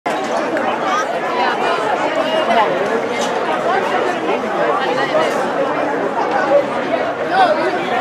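Many people talking at once, a steady babble of overlapping voices from spectators at a football game.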